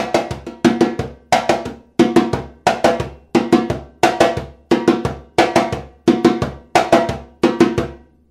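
Brazilian timbal (timbau) played with bare hands in the most basic samba-reggae pattern. A steady rhythm of ringing strokes, about three strong ones every two seconds with lighter strokes between, stopping just before the end.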